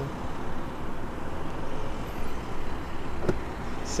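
Steady outdoor background noise, with one sharp click about three seconds in as a switch on the Audi A8's rear door panel is pressed.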